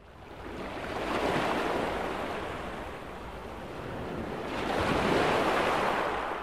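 Ocean surf: waves washing in, fading up from silence and swelling twice, first about a second in and again near the end, with a steady hiss between.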